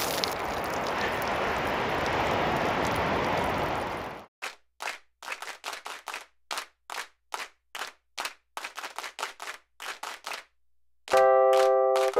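Water poured over a man's head, a steady splashing rush for about four seconds that cuts off abruptly. Then a run of short sharp hits, roughly two a second, and near the end sustained chiming musical notes begin.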